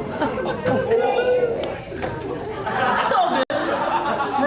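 Several people talking over one another in a large hall. The sound drops out for an instant about three and a half seconds in.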